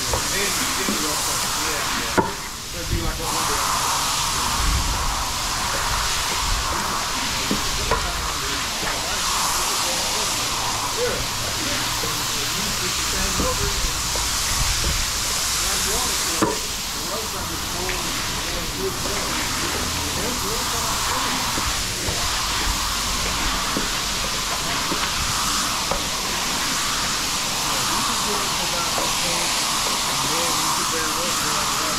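Steady hiss of running rinse water, with a squeegee swishing foamy water across a wet wool rug. Two sharp knocks, about two seconds in and about sixteen seconds in.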